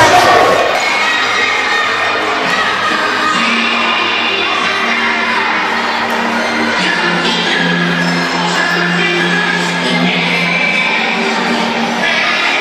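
A crowd of children shouting and cheering over background music.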